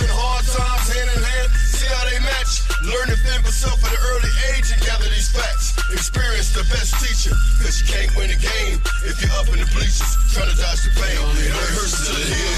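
A hip hop track playing: rapped vocals over a beat with heavy, steady bass and regular drum hits.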